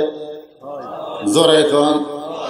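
A man's voice through a PA microphone in the drawn-out, chanting delivery of a Bengali waz sermon. It holds a note, breaks off briefly about half a second in, then comes back and swells into another sustained line.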